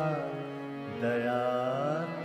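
Male voice singing a Hindi devotional bhajan, holding long wavering notes with no clear words, a new note starting about a second in, over a steady drone accompaniment.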